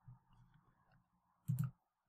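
Computer mouse click: a short, sharp click with a press and release about one and a half seconds in, over a faint low hum.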